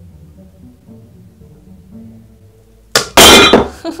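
A plywood butt joint glued with Liquid Nails construction adhesive gives way under a hanging weight about three seconds in, and the board and metal weight plates crash onto the wooden workbench with a loud clatter. The adhesive fails before the plywood. Faint background music plays before the crash.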